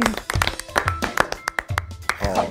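A few people clapping by hand in scattered, uneven claps, over background music.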